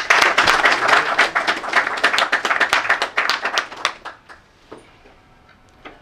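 Audience applauding: many hands clapping, dying away after about four seconds with a few last scattered claps.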